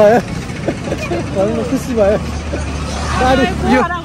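People talking over street traffic, with a low steady vehicle engine hum under the voices that grows stronger in the second half.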